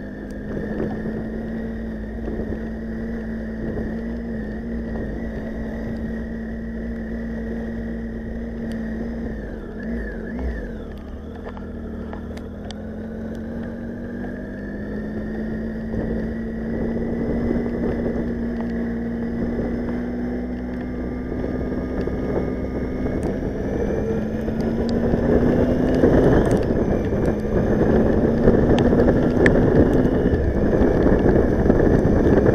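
Motorcycle engine running as the bike rides off along a rain-soaked road, its note holding fairly steady and then climbing as it speeds up, with wet-tyre hiss and wind noise growing louder over the last several seconds.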